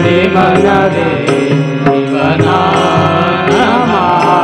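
A man singing a devotional bhajan with tabla accompaniment, the drum strokes sounding steadily under the melody.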